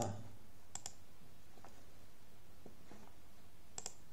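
Two computer mouse clicks, each a quick double tick of press and release, one a little under a second in and one near the end, over faint room tone.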